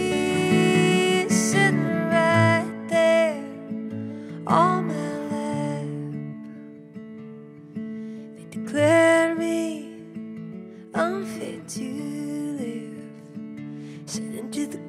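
A woman singing slow, drawn-out phrases over her own acoustic guitar, with pauses between the sung lines while the guitar notes ring on.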